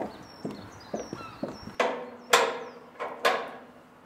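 Footsteps on the planks of a wooden footbridge, about two a second. About two seconds in, three louder footfalls with a ringing tail follow. Faint short chirps sound high above them.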